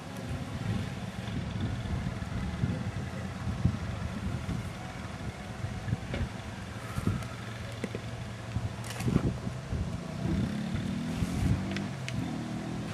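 A motor vehicle's engine running steadily, its pitch rising near the end as it speeds up, with a few light knocks in between.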